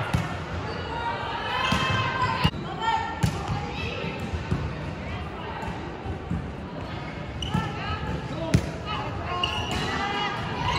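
Girls' voices calling out across a large gym hall between volleyball points, with a few sharp knocks of a volleyball. The loudest knock comes about eight and a half seconds in.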